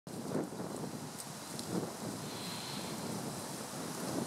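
Steady hiss of wind on the microphone with faint rustling, broken by a couple of soft low thumps.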